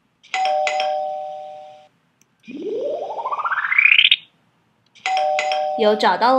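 Doorbell-style ding-dong sound effect, two descending notes that fade over about a second and a half, signalling that time is up. Then a fluttering whistle-like sweep rising steadily in pitch for under two seconds, and the ding-dong again near the end.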